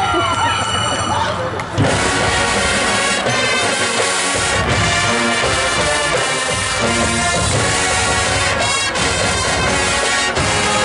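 Marching band playing: sliding, siren-like pitches give way about two seconds in to a loud entry of the full brass and percussion, with a cluster of sharp strokes near the end.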